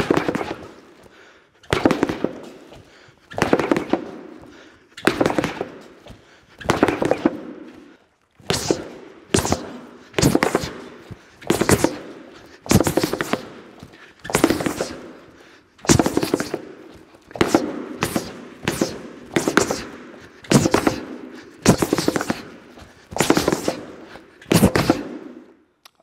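Gloved fists striking a wall-mounted rubber punching pad in short bursts of Wing Chun chain punches, one burst every one to one and a half seconds, about twenty in all, each with a brief echo.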